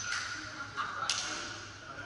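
Sharp slaps echoing around a large indoor sports hall, one at the start and another about a second in, over a steady high hum: ball strikes during a game on the court.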